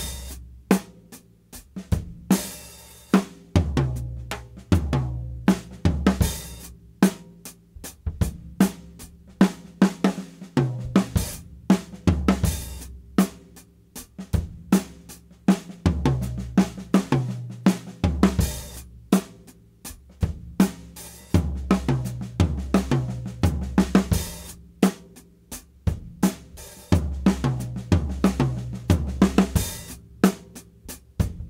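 Acoustic drum kit played continuously, alternating one-bar grooves with one-bar fill-ins in 4/4. The fills are accent patterns spread over the snare, toms and cymbals, with the kick drum and hi-hat carrying the groove.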